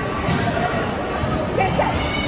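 Players' voices and chatter echoing in a gymnasium, with a few thuds on the hardwood floor. A short rising squeak-like call comes near the end.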